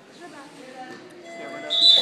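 A referee's whistle gives one short, shrill blast near the end, over faint chatter from spectators.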